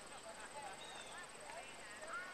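Faint, distant voices of people calling and talking, heard as short scattered snatches over a soft outdoor background hiss.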